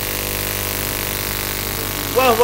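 Steady electrical hum with hiss from an old broadcast recording, unchanging and with no speech over it.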